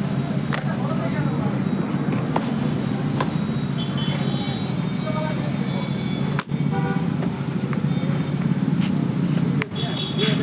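Steady low rumble of background noise with faint voices, and a few sharp clicks from plastic pencil boxes being handled.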